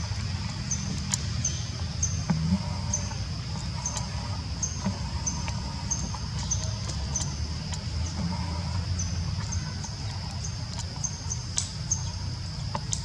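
Outdoor ambience among trees: a steady high-pitched hum with short high chirps repeating about twice a second, over a low rumble and a few light clicks.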